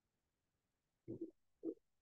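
Near silence: room tone, broken by two short, faint low murmurs, one just after a second in and one about half a second later.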